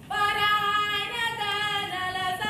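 A woman singing an Ewe traditional song, a high, long-held melody that starts suddenly just after the start and moves in steps between sustained notes, with no drumming heard.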